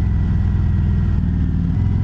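2020 Harley-Davidson Road King Special's Milwaukee-Eight 114 V-twin engine running steadily while cruising, its note shifting slightly near the end.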